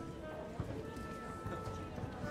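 Orchestra players moving about a wooden stage: footsteps and knocks of chairs and stands, low murmured talk, and scattered held notes from instruments played softly.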